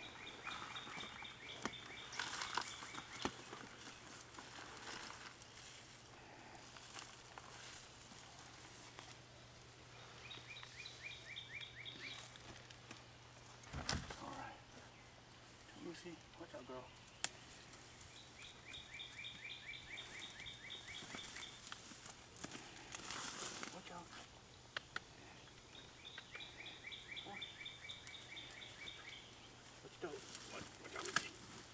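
A songbird repeats a short, fast trill four times, about every eight seconds, over the rustling and handling of potato plants and soil. A knock about fourteen seconds in is the loudest single sound.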